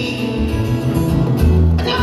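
A live rock band playing an instrumental passage: electric guitar over a moving bass line and drums, with a sharp drum or cymbal hit near the end.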